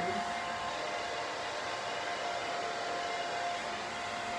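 Hand-held hair dryer running steadily: an even rush of air with a constant motor whine over it.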